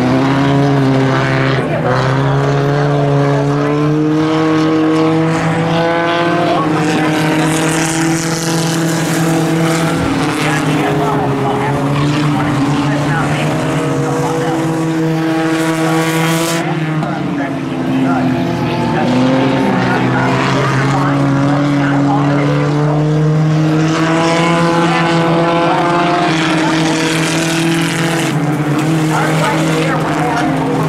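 Several stock cars racing on a dirt oval. The engines run continuously, their pitch rising and falling over and over as the cars accelerate and back off through the laps.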